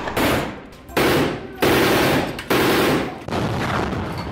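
Several bursts of automatic gunfire, each under a second long and starting sharply, one after another.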